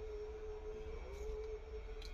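A faint, steady single tone held for about a second and a half, with a brief wobble about a second in, over a low background hum.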